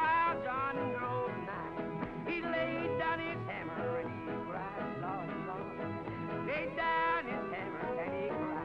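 Country band music: a lead melody that bends and wavers in pitch over acoustic guitar and a band backing.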